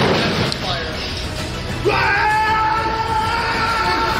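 A wrestler hits the ring mat with a thud at the start, over background music. About two seconds in, a long, high held vocal note begins and runs on for about two seconds.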